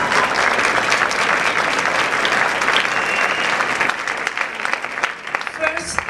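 Audience applauding, many hands clapping in a dense, steady patter that thins slightly near the end.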